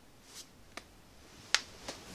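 A brief soft rustle, then three short sharp clicks or snaps, the loudest about one and a half seconds in.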